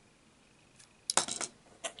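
Small hard LEGO plastic pieces clicking and clinking against each other. There is a quick cluster of sharp clicks a little past the middle, and one more just before the end.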